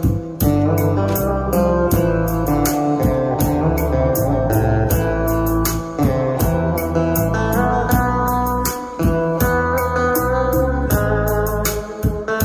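Music with a steady beat and a heavy bass line, played loudly through a Sony CFD-700 boombox and its rear subwoofer.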